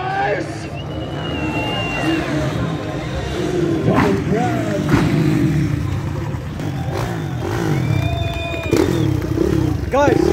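Dirt bike engines running and revving, mixed with voices; a couple of sharp knocks about four and five seconds in.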